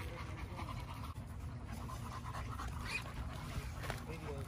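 American bully dog panting quietly.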